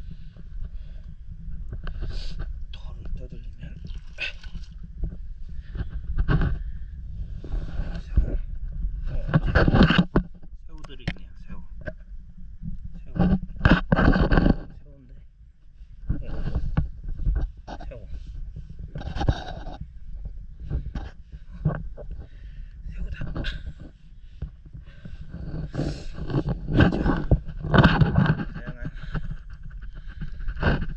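Irregular rustling, scraping and splashing as hands work through wet seaweed and stones in shallow tidal water, in short bursts, over a steady low rumble of wind or handling on the camera.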